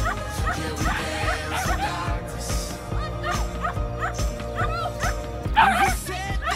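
Pop song with a steady beat, over which a dog barks repeatedly in short yips as it runs an agility course, with a louder burst of barking near the end.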